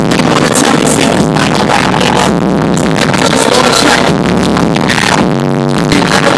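Live hip-hop concert music with an electronic beat, played very loud over an arena sound system and picked up by a phone in the crowd.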